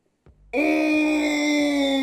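A person's long, drawn-out cry of disgust, held at one steady pitch for about two seconds and sliding down as it fades, starting about half a second in.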